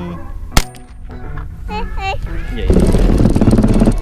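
A single rifle shot about half a second in: a sharp crack with a short decaying tail. Voices follow, then a loud rough noise lasting about a second near the end.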